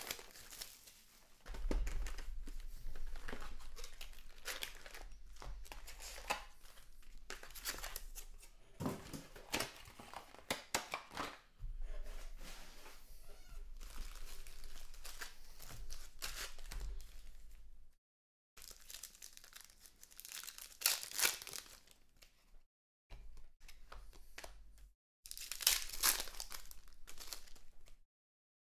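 Trading-card pack wrappers being torn open and crinkled, with cards handled and slid against each other: a string of short, uneven rips and rustles, the loudest about two-thirds of the way through and near the end.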